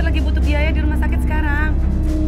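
A woman's voice in short wavering phrases over dramatic background music with a deep, steady drone.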